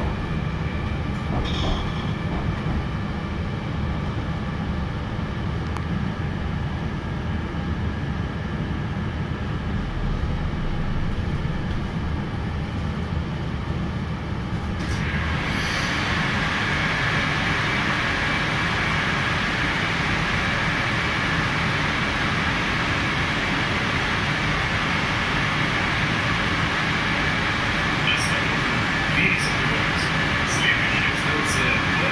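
Inside a Moscow Metro car stopped at a station: a steady low rumble while the doors are shut. About halfway through the doors open, with a brief high tone, and a fuller, hissier steady noise from the station platform comes in.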